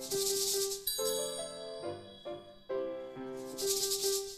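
Piano playing a simple melody in clear separate notes, with a shaker rattled in two bursts of about a second, one at the start and one near the end.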